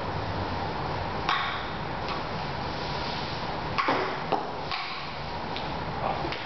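Table-tennis ball clicking against paddles and the table in short, irregular hits, a cluster of quick ones about four seconds in, in a hard-walled bare room.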